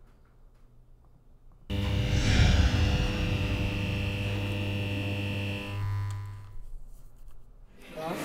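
A short musical intro sting: near silence, then a sustained chord with many held tones comes in suddenly about two seconds in, holds for about four seconds, and fades out on a low tone near the end.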